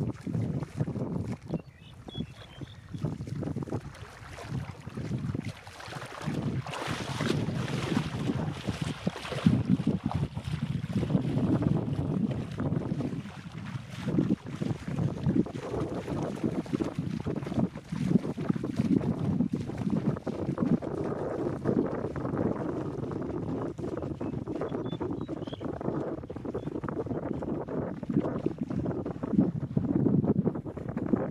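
Wind blowing across the microphone in uneven gusts, a low noise that rises and falls, strongest about seven to ten seconds in.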